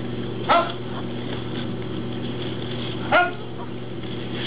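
A group of taekwondo students giving short, sharp kihap shouts in unison with their strikes, twice, about two and a half seconds apart, over a steady background hum.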